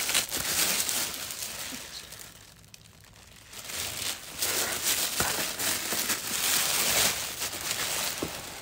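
Thin plastic mailer bag crinkling and rustling as it is torn open and a box is pulled out of it. The rustling eases off for a second or so in the middle, then picks up again.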